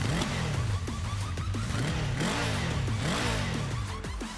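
A revving engine sound, its pitch rising and falling again and again, with music underneath.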